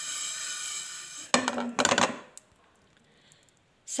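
A spoon scraping and clinking whole spices around a steel pan as they are dry-roasted, in a short burst a little over a second in. A steady high whine runs under the first second, and the second half is near silence.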